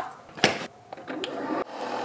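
Single-serve pod coffee maker: two clicks as the lid is shut over the pod, then about a second in the brewer's pump starts a steady hum as coffee begins to pour into the mug.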